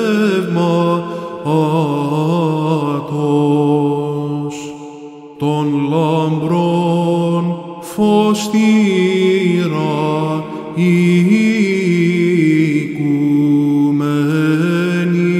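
Byzantine chant: a male voice singing a slow, melismatic Orthodox hymn, long held and ornamented notes over a steady low note. There is a short break for breath about five seconds in.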